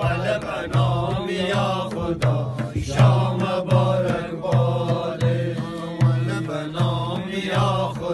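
Group of men singing a Wakhi welcome song together in a chant-like unison, over a steady frame-drum beat of about four strokes every three seconds.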